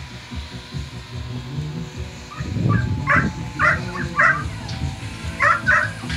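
Working kelpie barking at a mob of sheep: a run of short, high-pitched barks beginning about two and a half seconds in, then a pause and two more near the end.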